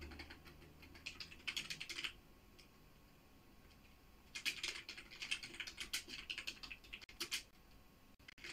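Computer keyboard typing in quick runs of keystrokes, with a pause of about two seconds in the middle.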